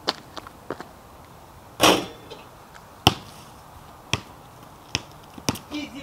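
A basketball hitting hard ground, a few sharp knocks, then a louder, rattling hit about two seconds in. After that come single bounces that arrive quicker and quicker, as a ball does when it bounces to rest.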